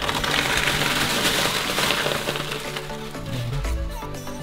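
Used rabbit litter of hay and wood shavings being tipped out of a plastic litter tray into a bin bag: a rustling, crackling pour that runs for about two and a half seconds and then tails off, over background music.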